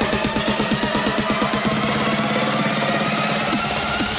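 Electronic dance music build-up: a fast, even beat repeating several times a second under a synth line that slowly rises in pitch, with the deep bass falling away in the second half.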